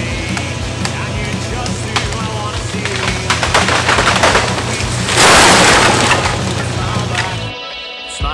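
A dead sycamore crashing down through the branches and hitting the ground: a loud rushing crash about five seconds in, lasting over a second, over rock music with vocals.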